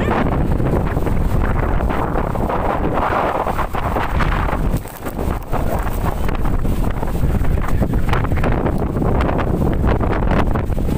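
Strong storm wind blowing across the microphone: a loud, steady rush with a brief lull about five seconds in.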